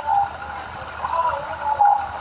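Quiet voices and laughter over a low, steady rumble from the moving vehicle, heard through narrow, phone-like livestream audio.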